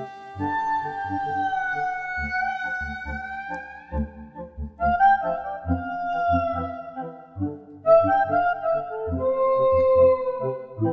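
A clarinet-like wind instrument playing long, held notes that bend and glide in pitch, over a low, rhythmically pulsing accompaniment.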